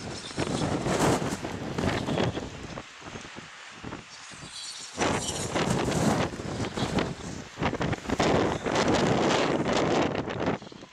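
Wind buffeting the microphone in gusts: a loud rush for about two seconds near the start, a lull, then a longer stretch of gusting through the second half.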